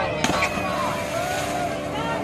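A large Ganesh idol hitting river water in one heavy splash about a quarter second in, followed by a brief wash of spray.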